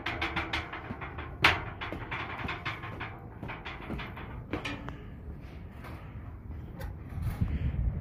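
Footsteps climbing a steel grating staircase, a quick run of short metallic knocks and clanks, the loudest about a second and a half in, growing quieter after the first few seconds.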